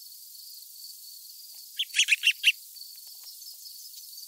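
A small songbird calling: a quick burst of about five sharp chirps about two seconds in, over a steady faint high-pitched hiss.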